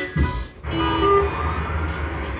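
Music from a TV commercial playing through the television's speakers, heard in the room. It breaks off briefly about half a second in, then resumes with steady held notes.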